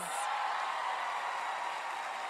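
Studio audience applauding and cheering, a steady wash of clapping.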